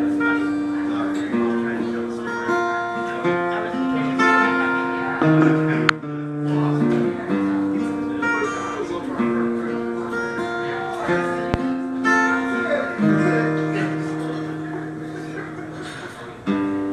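Amplified acoustic guitar playing a song's instrumental intro, with the chords changing every second or two and no singing yet.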